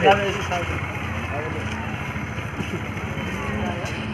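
A steady vehicle engine hum with scattered voices of a crowd around it, and a man's voice briefly at the very start.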